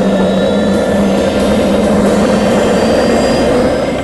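Helicopter in flight, heard from a camera mounted outside the cabin: a steady, loud rush of rotor and turbine noise with wind.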